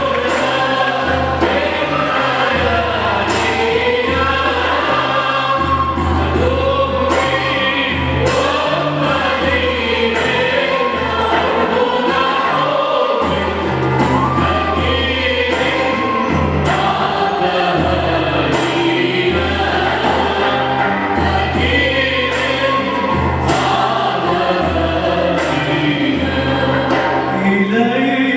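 Choir singing with keyboard accompaniment, low sustained notes held under the voices and changing in steps.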